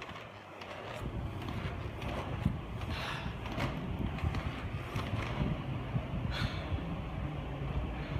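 Inline skates with 80 mm wheels rolling fast over a car-park floor: a steady low rumble that builds about a second in, with a few short scrapes from the skating strides.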